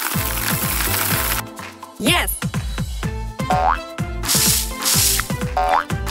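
Cartoon background music with a steady thumping beat, overlaid with comic sound effects: a springy boing about two seconds in, and quick rising zips past the middle and again near the end, with bursts of hiss at the start and between the zips.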